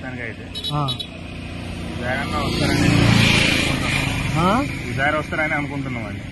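A road vehicle passing close by, its noise swelling to a peak about three seconds in and then fading away.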